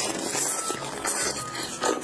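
Close-miked eating sounds: wet biting, chewing and slurping of spicy, oily glass noodles, in several short bursts.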